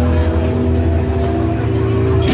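Arena PA playing entrance music: a loud, steady low drone with a slowly rising tone above it.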